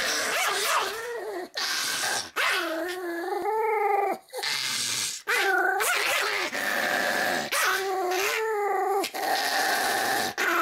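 A Pomeranian growling, with teeth bared: a run of drawn-out, wavering pitched cries broken by short pauses.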